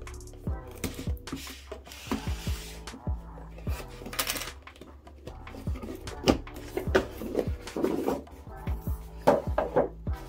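A product box and its plastic inner container being opened and handled: a series of clicks and knocks with a couple of short rustling slides, the loudest knocks about six and nine seconds in. Background music runs underneath.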